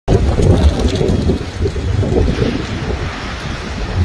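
Strong wind buffeting the microphone of a handheld phone, a loud uneven rumble that rises and falls with the gusts.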